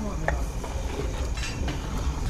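A metal ladle stirring and scraping in a large steel pot of simmering curry, with a sharp clink about a third of a second in.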